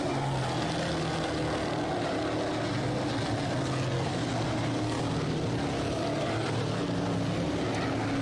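Pack of Sportsman dirt modified race cars running laps on a dirt oval: several engines at differing pitches layered into one steady drone.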